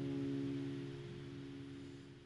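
Acoustic guitar's last chord of the song ringing out and slowly fading away.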